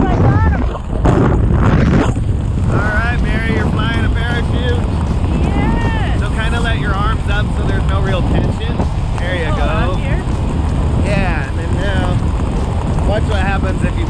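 Heavy wind rush buffeting the camera microphone during a tandem parachute descent, with voices talking over it from about two and a half seconds in.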